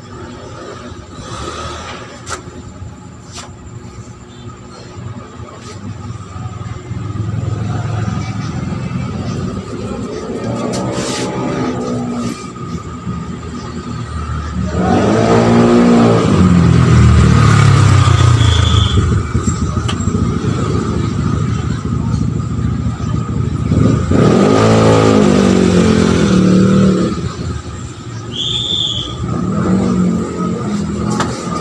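Engines of vehicles passing on the street outside, each swelling and fading as its pitch rises and falls, loudest about fifteen and twenty-five seconds in, over a steady background hum.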